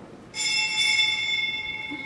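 A small metal bell, such as a church's sacristy bell, struck once about a third of a second in. Its bright ring holds and slowly fades. It marks the start of the Mass, just before the entrance hymn.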